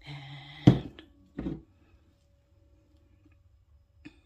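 Pouring containers knocking on a work table as they are put down and picked up: one sharp knock, a small click, then a duller thump about a second and a half in.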